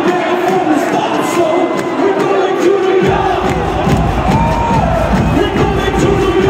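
Large concert crowd cheering and shouting over a dance track. About three seconds in, the track's heavy bass kicks in.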